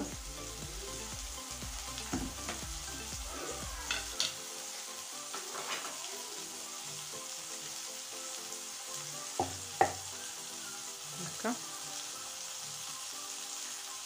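A spoon stirring ketchup and mustard together in a small bowl, with a few light clicks of the spoon against the dish, over a steady hiss.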